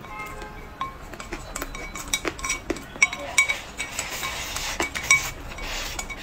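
Wooden chopsticks clicking and scraping against a ceramic bowl, many quick light clinks, some with a short ring, as the last scraps are scooped from the bowl into the mouth, with eating sounds between them.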